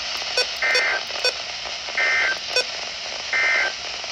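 Midland NOAA weather radio sending the EAS end-of-message data signal: three short bursts of warbling two-tone data, about 1.4 s apart, marking the end of the severe thunderstorm warning broadcast. Under them runs a steady hiss of radio static, with a few sharp clicks between the bursts.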